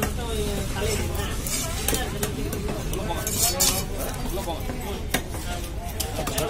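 A heavy knife chopping through fish on a wooden log block, a few sharp knocks at irregular intervals, with a cluster of strokes in the middle. Behind them, the steady chatter of a crowd of voices.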